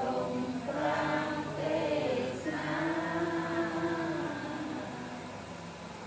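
A group of voices chanting a Buddhist prayer together in long held, gliding tones. The chant starts at the very beginning and swells, then eases off near the end.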